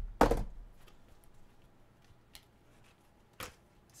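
A sharp knock on the desk about a quarter-second in, then quiet handling with two short, faint scrapes or rips as a tennis shoe is being torn apart by hand.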